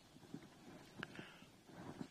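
Near silence: faint outdoor racetrack ambience with a few soft, scattered thuds.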